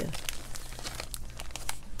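Clear plastic card sleeves crinkling as they are handled, a run of irregular rustles and light crackles.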